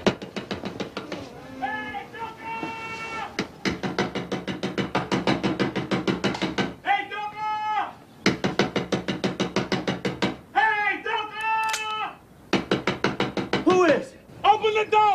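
Rapid, relentless knocking on a house door, about eight blows a second in long runs, broken three times by a man's drawn-out shouted calls.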